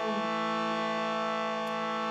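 Shruti box, a bellows-pumped reed harmonium, sounding a steady drone on the notes A and E.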